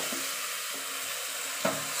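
Marinated mutton pieces sliding from a steel bowl into a pot of hot oil and fried onions, sizzling steadily. Two short knocks sound, one right at the start and one near the end.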